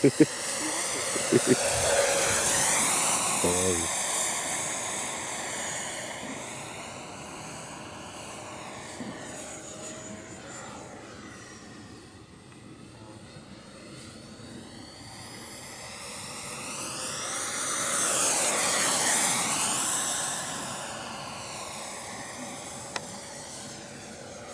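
Electric ducted fan of a radio-controlled jet model (FMS 64 mm, 11-blade fan) running at flying speed: a whine that swells and fades twice as the model passes, loudest about two seconds in and again about nineteen seconds in.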